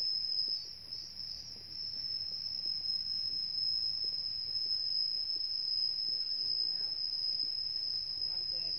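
A shrill insect chorus holding one steady high pitch without a break.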